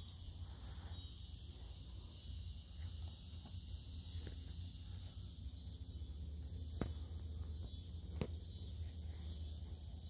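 Steady high, even chirring of an insect chorus in the grass, with two sharp clicks about seven and eight seconds in.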